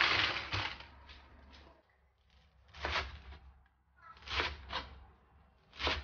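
White clams swished by hand in a stainless-steel bowl of salted water, shells clattering and water sloshing, in a few separate bursts with quiet gaps; they are being soaked in salt water to purge their sand.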